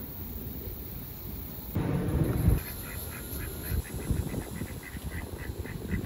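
Ducks quacking in a quick run of short calls, about four a second, starting about two seconds in, just after a brief low rumble.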